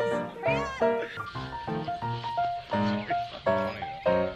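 Bright plucked banjo music playing, with a husky's drawn-out, wavering howl over it near the start.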